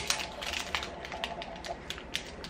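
Fingers picking open the crinkly wrapper of a small wafer-ball sweet: a run of soft, irregular crackles and clicks.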